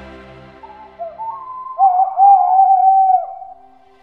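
Soft background music fades out, and a single wavering, whistled bird call follows in the middle, lasting about two seconds. The call has a main pitch that slides and wobbles, with a second, higher line above it.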